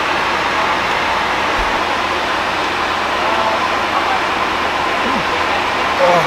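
Steady rushing noise of an airliner cabin in flight, the engine and airflow noise even throughout, with faint voices in the background.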